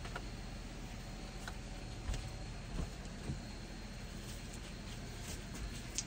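A few soft knocks and clicks as a water-fed pole and its hose are handled and connected, over a steady low background hiss.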